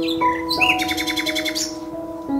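Birds chirping, with short gliding calls at the start and then a rapid high trill lasting about a second, over soft sustained background music.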